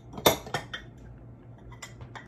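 Small fine bone china trays clinking against each other and the table as they are handled and set down: one sharp clink about a quarter second in, two or three lighter ones right after, and faint knocks near the end.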